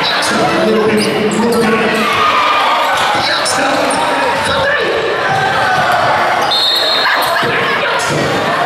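Basketball bouncing on a hardwood gym floor amid players' and spectators' voices, echoing in a large hall. A brief high squeak comes about six and a half seconds in.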